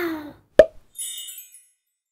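Cartoon logo sound effects: a falling whistle-like tone dies away, then a single sharp pop about half a second in, followed by a brief high twinkling sparkle that stops about a second and a half in.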